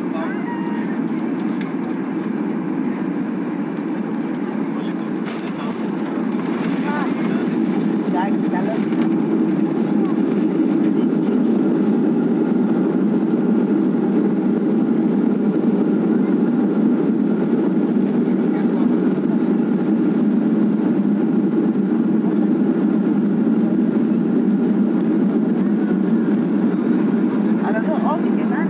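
Cabin noise of a Ryanair Boeing 737-800 landing, heard over the wing: a steady low roar of engines and airflow. The roar grows louder between about six and nine seconds in as the jet touches down, then holds at that level through the rollout on the runway with its spoilers raised.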